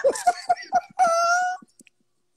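A man laughing hard: a quick run of short bursts, then a high, held wailing note of laughter for about half a second, after which it fades out.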